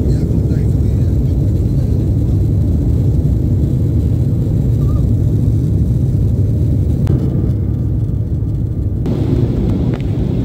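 Jet airliner cabin noise during the takeoff run and lift-off, heard from a window seat: a loud, steady, deep rumble of the engines at takeoff power.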